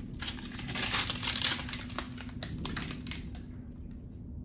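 Protective backing being peeled off the adhesive side of a Velcro hook strip: a rough rustle of many small ticks that thins out about three seconds in.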